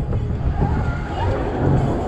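Wind buffeting an action camera's microphone as a fairground thrill ride swings the rider through the air: a loud, low, steady rumble.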